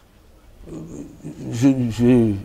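A man's voice: a short pause, then a low hesitant murmur, and speech resuming near the end.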